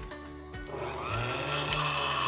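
A small bench-top power tool starts up about two-thirds of a second in and then runs steadily. Background music plays underneath.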